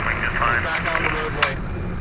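Indistinct voice chatter, like radio dispatch, for the first second and a half, with a short click near the end of it, over a steady low rumble.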